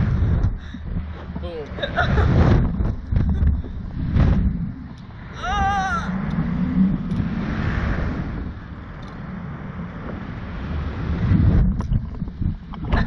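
Wind buffeting the seat camera's microphone on a Slingshot ride as the capsule swings through the air. Riders make short vocal sounds about two seconds in, and one gives a high, wavering squeal about five and a half seconds in.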